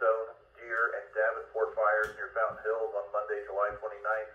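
Speech from a two-way radio's speaker: an AnyTone 578 manpack receiving a net control operator reading a situational awareness report, the voice thin and tinny.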